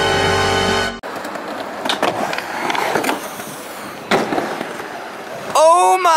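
Music cuts off about a second in, then a skateboard rolls on a ramp: a steady rolling rush of wheels with sharp clacks about a second apart. A loud yell breaks in near the end.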